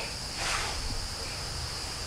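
Steady high-pitched insect chirring, as of crickets, in the background over faint outdoor hiss.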